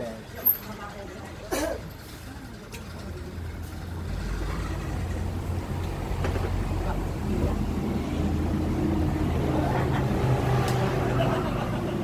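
A motor vehicle's engine running close by, a low rumble that builds from about four seconds in and holds steady to the end, under faint voices. A sharp click sounds near the start.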